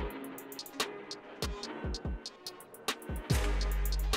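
Drill-style hip-hop beat playing back: quick hi-hat patterns and rolls over downward-sliding 808 bass notes, with a loud, long held 808 note starting a little after three seconds in.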